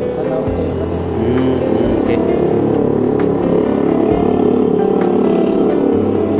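Background music plays over street noise, while a car drives past close by.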